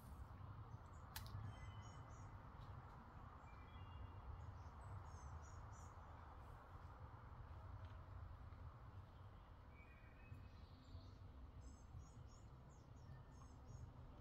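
Quiet outdoor ambience with faint birdsong: groups of short, high chirps from small birds recur every few seconds, with a single sharp click about a second in.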